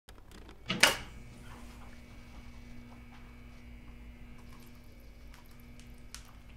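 A single sharp knock about a second in, followed by a faint steady hum with a few small scattered clicks.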